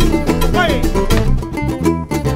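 A live Latin folk band playing an instrumental passage: quick strumming on small guitar-like string instruments over guitar and bass, with no singing.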